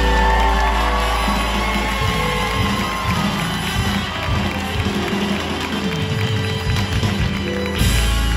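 Live rock band holding a loud sustained chord with electric guitar bending notes over it, the audience cheering. After about two to three seconds the chord drops away into thinner playing over the crowd noise, and the full band comes back in loudly just before the end.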